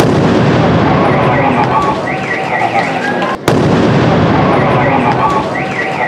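Controlled detonation of a pressure cooker bomb: a sudden blast with a long noisy tail, heard twice about three and a half seconds apart. A short warbling car-alarm-like tone sounds about two seconds after each blast.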